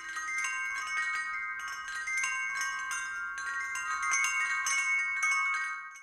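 Wind chimes ringing, with many irregular strikes a second and their tones overlapping and sustaining.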